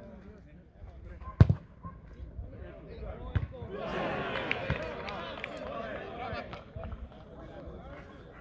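A football kicked hard: one sharp, loud thud about a second and a half in, with a few lighter knocks later. Several voices shout at once for a couple of seconds in the middle.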